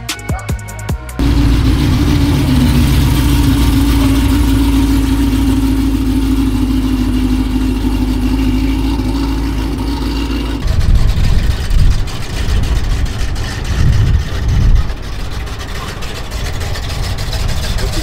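Cadillac CTS-V's supercharged V8 running steadily with a deep, even exhaust note as the car rolls along, then revved in a few short, uneven bursts in the second half.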